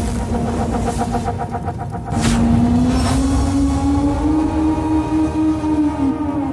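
TV show intro theme: dense, loud cinematic sound design under the logo animation. About two seconds in, two quick whooshes come and a low drone starts, rising slowly and then holding.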